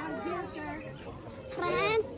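A young child's voice talking, high-pitched, louder near the end.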